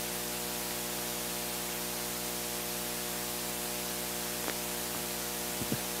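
Steady hiss and electrical mains hum of an old recording's background noise, with a couple of faint clicks in the second half.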